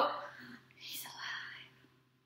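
A voice whispering briefly, just after a voiced note cuts off at the start; the sound fades to silence near the end.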